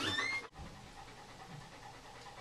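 Yellow Labrador panting softly through an open mouth, her tongue swollen from a rattlesnake bite. The sound drops sharply about half a second in and the soft panting carries on.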